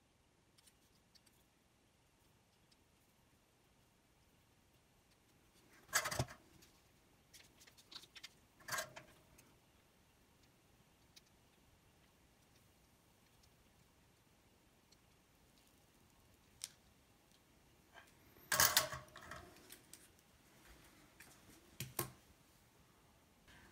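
Quiet room tone broken by a few short metallic clicks and clatters of small parts being handled while soldering a wire onto an alligator clip. The loudest come about six and nine seconds in and as a short cluster near the end, with fainter ticks between.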